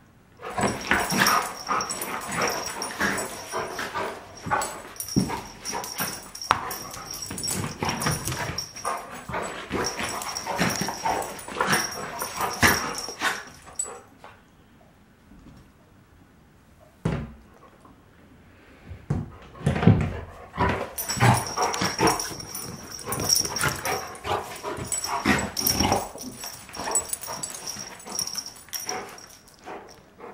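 A young yellow Labrador and a West Highland White Terrier at rough play, with dog vocalizations such as barks and yips. The sound comes in two long bouts with a quieter lull of a few seconds in the middle, broken by a single knock.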